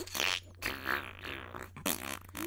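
A man's heavy, breathy sigh close to the microphone, followed by a few faint vocal sounds and a short click near the end.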